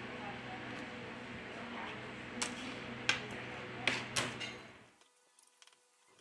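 A few light clicks and taps from handling the opened phone and small tools on the work mat, over a steady low hiss that fades to near silence about five seconds in.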